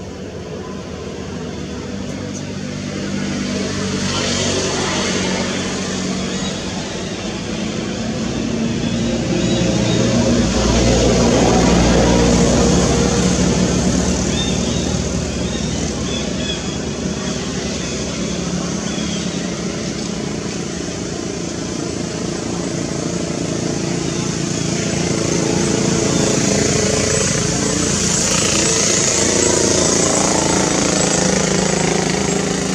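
A motor engine running steadily, growing louder to about twelve seconds in, easing off, then building again near the end.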